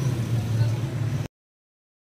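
Steady low hum of street traffic with engine noise, cut off abruptly to silence a little over a second in.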